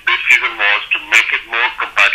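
Speech only: a man talking continuously, his voice narrow and phone-like.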